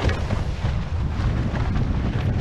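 Wind buffeting the microphone of a camera aboard a fast-sailing catamaran, a loud, uneven low rumble, with water splashing and hissing off the hulls.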